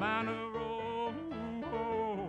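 A man singing live into a microphone while playing a Yamaha electronic keyboard. He holds one long note for about a second, then bends the pitch up and slides down, over the keyboard's accompaniment.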